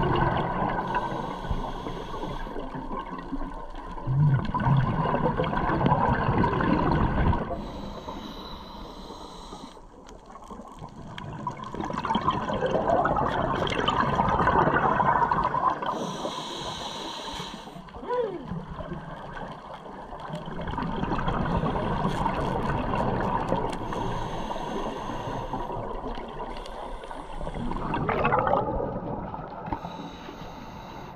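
Scuba breathing through a regulator underwater: a hiss on each inhale and gurgling bubbles on each exhale, the sound swelling and fading every several seconds with each breath.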